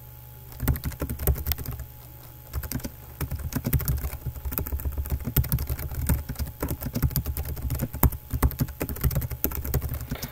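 Typing on a computer keyboard: a short run of keystrokes shortly after the start, a brief pause, then steady rapid typing.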